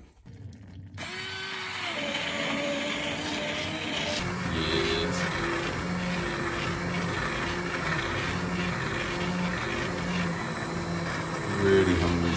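Handheld immersion blender starting about a second in and then running steadily, its blade churning through a pot of chunky vegetable soup. Background music with a melody comes in from about four seconds.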